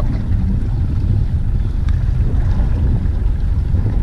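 Wind buffeting the microphone on a small boat at sea: a loud, steady low rumble.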